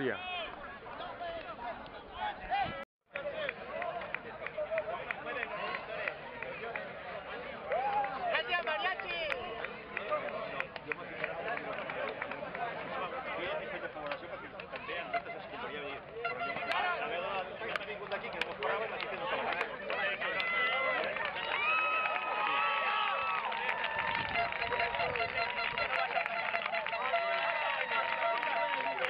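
Crowd of voices on a football field, many people talking and shouting over one another, with some longer held calls near the end. The sound drops out briefly about three seconds in.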